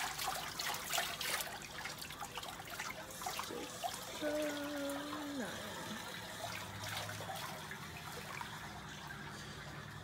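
Water trickling steadily in a small heated rooftop pool, a gentle continuous wash. A short held hum-like tone sounds a little before the middle and slides down in pitch as it ends.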